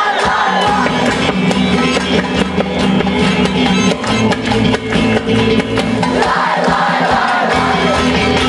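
Loud live band music with a steady drum beat, and a large crowd-sized choir singing and shouting along, the massed voices swelling near the end.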